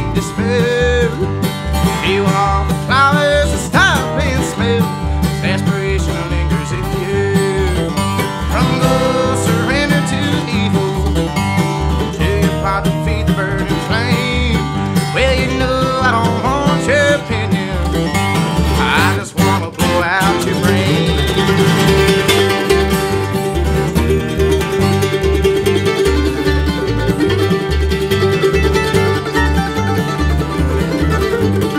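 Live bluegrass trio playing: a flatpicked acoustic guitar, a mandolin and a plucked upright bass keeping a steady pulse. About two-thirds of the way through the sound of the upper instruments changes to a more even, sustained line.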